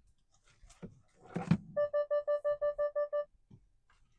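Hyundai Verna's in-car electronic warning chime: a quick run of about ten identical beeps, roughly six a second, lasting about a second and a half. It comes just after a soft thunk.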